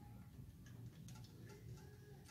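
Near silence: a few faint, scattered light ticks from fingers handling the claw string and the metal pulley assembly, over a faint low hum.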